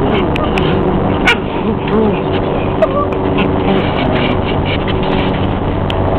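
Dogs playing, giving a few short vocal sounds over a steady background noise, with some sharp clicks.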